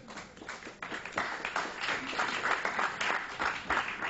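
Audience applauding: a patter of many hands clapping that swells about a second in and thins out near the end.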